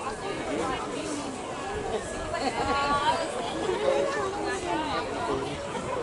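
Spectators chattering at the trackside: several voices talking over one another, with no single clear speaker.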